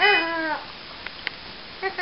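Young infant cooing: a short arched vowel sound at the start and another beginning near the end.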